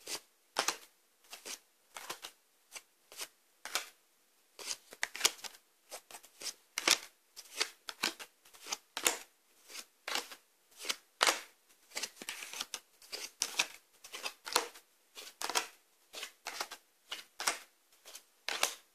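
Tarot cards being dealt out one at a time onto a tabletop, each card landing or being flicked down with a short, sharp click, about two a second, with a quicker flurry of card handling about two-thirds of the way through.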